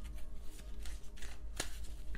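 A deck of tarot cards being shuffled: a run of soft card clicks, with a sharper snap about one and a half seconds in, over faint background music.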